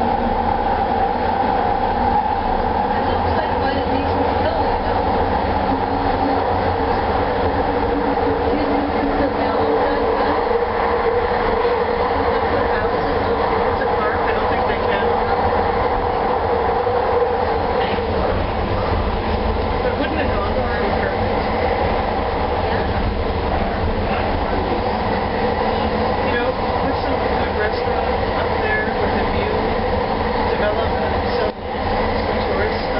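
Bombardier Mark II SkyTrain car running at speed on its guideway: a steady whine from the linear induction motors over continuous wheel-on-rail noise.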